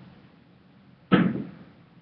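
A short, sharp breath from the man about a second in, starting suddenly and fading quickly. Before it there is only faint room tone.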